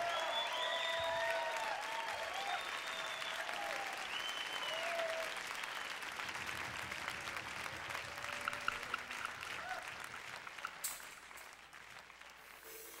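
Concert audience applauding, with cheers in the first few seconds, the applause thinning and dying away toward the end.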